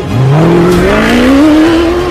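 Ford Ranger rally-raid truck's engine accelerating hard as it passes, its note rising steadily through the gears from low to high.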